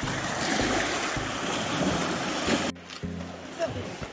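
Wind and surf on the shore: a steady rushing noise with some low buffeting on the microphone, cut off abruptly nearly three seconds in.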